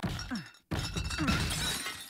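A short grunt of effort, then a glass shattering about two-thirds of a second in, the crash and scattering shards carrying on.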